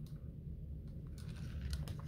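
A red plastic cup being handled and lowered after a sip through a straw, giving a few faint clicks and taps in the second half, over a low room rumble.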